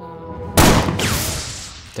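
A single loud blast from a double-barrelled shotgun about half a second in, dying away over a long tail.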